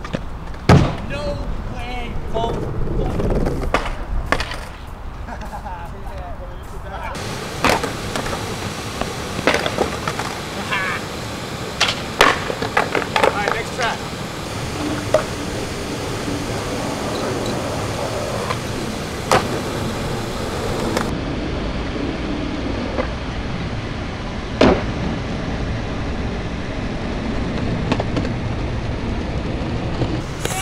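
Skateboards on street spots: wheels rolling with a steady rumble, broken about eight times by sharp clacks of boards popping and landing on wood and concrete.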